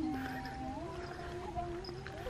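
A woman singing a Tày khắp nôm folk song in long, drawn-out notes, the melody stepping up to a higher held note about a second in.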